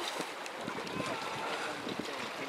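Sea water washing against a rocky shore, with wind on the microphone.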